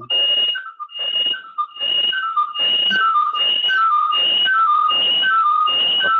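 A loud, repeating whistle-like call: a high steady note followed by two or three short notes stepping down in pitch, repeated a little under twice a second.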